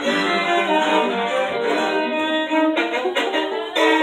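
Two violins playing a melody together, bowed notes held about a second each.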